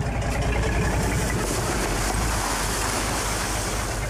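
A garbage truck's engine running in a steady rumble, with a loud hiss over it.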